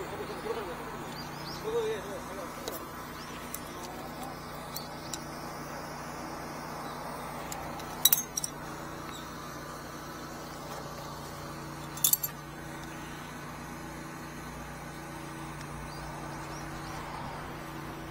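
A high-pressure drain jetter's engine runs steadily in the background. Twice, about eight and twelve seconds in, sharp metal clinks sound as steel nozzles and tools are handled at the drain grate.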